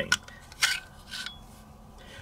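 A CZ 75 B pistol's steel slide being slid forward off the frame's internal rails: a few short metal-on-metal scrapes and clicks, about half a second apart.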